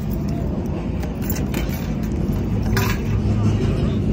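Motorcycle engine idling steadily with a low, even rumble, and a brief hiss about three quarters of the way through.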